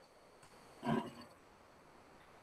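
A man's brief wordless vocal sound about a second in, against quiet room tone.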